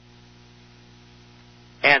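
Faint steady electrical hum, like mains hum, on the recording line, heard through a pause in the talk. A man's voice comes back in with a single word near the end.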